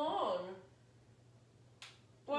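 A woman's voice trailing off in the first half second, then a quiet room, then one sharp click near the end.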